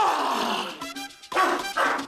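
A man's loud yell that falls in pitch, then two shorter cries about a second and a half in, over background music.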